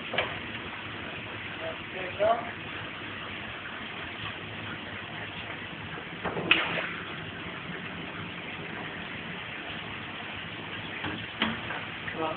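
Steady hiss of a chip-shop fryer range and its kitchen, with one sharp clatter about six and a half seconds in as chips are handled at the fryer.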